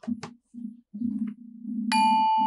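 Low background music, then near the end a single bright chime sound effect: a bell-like ding that strikes suddenly and keeps ringing.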